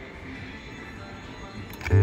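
Aztec Treasure three-reel slot machine between spins, with only casino background noise at first. Near the end come a couple of clicks, and then the machine's reel-spin music starts abruptly on a loud low tone with a stepping tune as the next spin begins.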